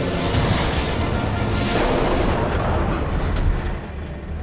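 Film sound mix: a loud, dense rush of noise from a large hovercraft surging past, with electric arcs crackling around it, over the musical score. The noise swells and stays loud until it drops off just before the end.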